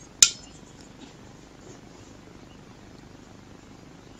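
A single sharp metallic click with a brief ring about a quarter second in, from the chrome-covered chromatic harmonica being handled in the fingers; otherwise only faint room hiss.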